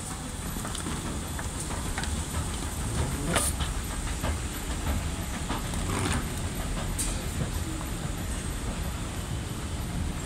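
Airport moving walkway running: a steady low rumble with scattered clicks and clatter, a few sharper ones near the middle.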